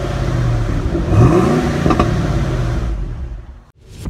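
A car engine revving, its pitch climbing and falling back in the middle, then fading out just before the end.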